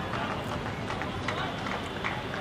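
Open-air ambience of a cricket ground during a match: a steady background noise with distant, indistinct voices and short sharp sounds scattered through it.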